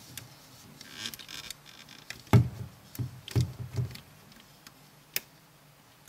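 Hands wrapping rubber loom bands around the plastic pins of a Rainbow Loom: a few soft knocks and clicks of fingers and bands against the pins, with one sharp click near the end.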